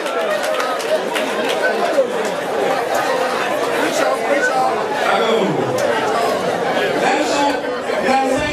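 Crowd chatter: many people talking at once in a large tented space, with no single voice standing out.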